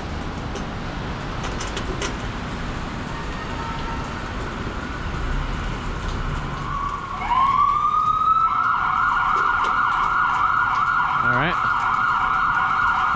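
Emergency-vehicle siren: a faint steady wail at first, then about seven seconds in it winds up in pitch and holds a loud, steady high wail over background street noise.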